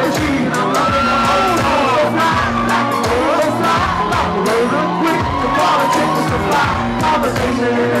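Loud live hip-hop music over a club PA, with a steady beat and a vocalist singing into a handheld mic. A crowd whoops along.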